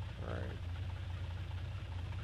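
Flight-simulator engine sound of a light single-engine propeller plane idling on the runway: a steady low hum with an even hiss over it.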